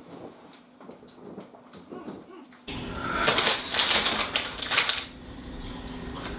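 A few faint scattered clicks, then about three seconds in a sudden stretch of loud, rapid clattering clicks lasting around two seconds. It sounds like hard, light building pieces such as wooden skewers being handled and knocked together on a table.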